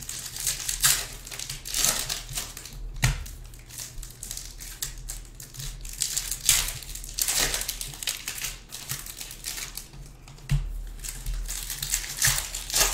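Foil trading-card pack wrappers crinkling and rustling in irregular bursts as the packs are opened and the cards slid out.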